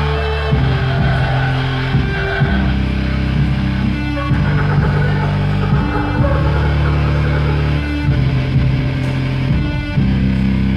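Live band music led by an electric keyboard, playing loud held low chords that change every second or two, with a busier higher part over them.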